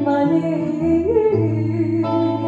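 Live music: a semi-hollow electric guitar playing sustained chords, with a voice holding a note that glides up briefly about halfway through.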